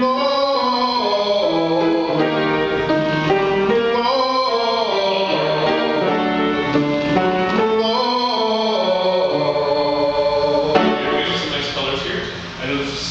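A male tenor sings a vocal exercise over piano accompaniment: three phrases of about four seconds each, each rising and then falling in pitch. The singing stops shortly before the end.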